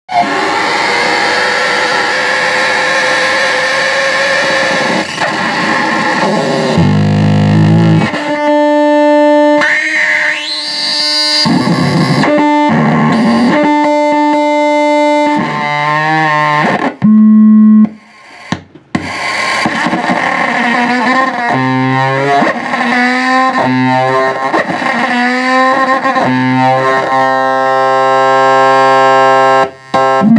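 Electric guitar laid flat and played through a chain of effects pedals as noise music: a dense distorted wash at first, then distorted drones that cut in and out abruptly. Some tones rise in pitch, some waver, and a steady held tone comes near the end.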